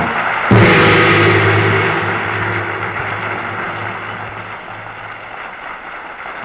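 A large gong struck once about half a second in, ringing on and slowly fading over the next few seconds, marking the start of a taekwondo bout.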